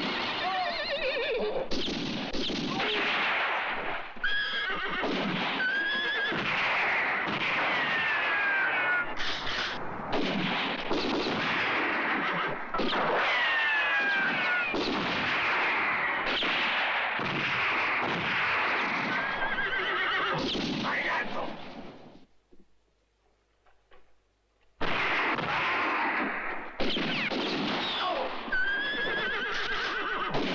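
Horses neighing and whinnying again and again, shrill rising and falling calls, with a break of near silence lasting about three seconds about 22 seconds in.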